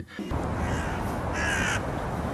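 A single harsh bird call, about half a second long, comes about one and a half seconds in. It sits over a steady background hiss of outdoor ambience.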